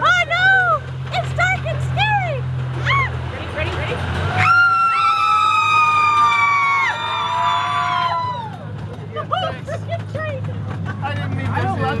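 Amusement-park miniature train running with a steady low engine hum, whose pitch shifts about three to four seconds in. Riders call out in short whoops early on, then several voices hold one long, slowly falling 'woo' together for about three seconds, the loudest sound here.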